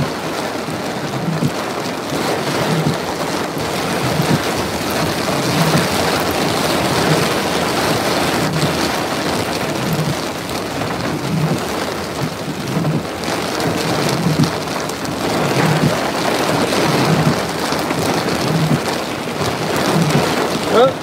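Steady heavy rush of wind-driven squall rain and wind. A soft low thump repeats about every second and a half underneath.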